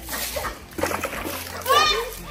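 Water thrown from a plastic jug splashing over a person and against a wall and paving, followed near the end by a short, high-pitched voice cry.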